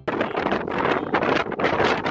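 Strong, gusting wind buffeting the camera microphone, a loud rough rush that rises and falls in quick surges.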